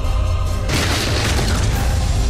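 Film trailer score with a steady deep bass drone. About two-thirds of a second in, a boom hits with a rush of noise over the music and fades away over about a second.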